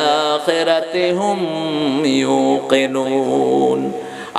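A man chanting a verse of the Quran in a drawn-out, melodic recitation style, amplified through a microphone, holding long notes that waver and glide in pitch.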